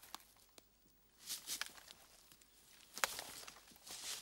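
Faint rustling with a few scattered light clicks, and a sharper click about three seconds in.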